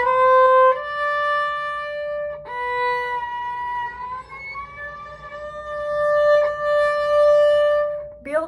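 Solo violin played on one string: a few short bowed notes, then the first finger slides audibly up about four seconds in, a shift from first to third position, and a long D is held to the end.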